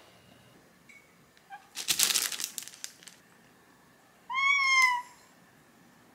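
A house cat meows once, a single call a little under a second long that rises slightly and then falls. It comes about two seconds after a short burst of rustling.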